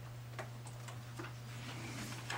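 Quiet room with a steady low hum, and a few faint light ticks of papers being handled.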